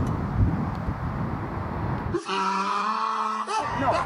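Wind rumbling on the microphone, then a man's drawn-out vocal "ohh" held on one steady pitch for about a second and a half, reacting to a putt.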